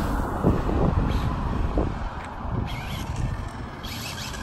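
A passenger car driving past and away down the street, its engine and tyre noise loudest at first and fading as it goes.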